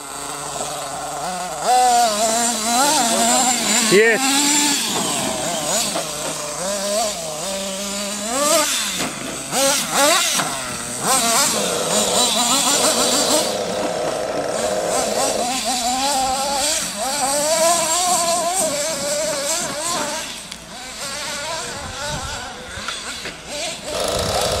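Small nitro glow engines of radio-controlled monster trucks revving up and down as they are driven, the pitch rising and falling again and again with the throttle.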